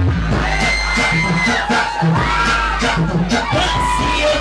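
Brazilian funk track played loud over a PA with a repeating heavy bass beat, while a crowd screams and cheers over it.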